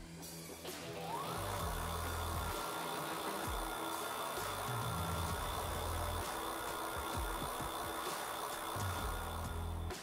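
E-bike rear hub motor spinning the lifted wheel under throttle: a whine rises about a second in, then holds steady at one pitch. Background music with a low beat plays under it.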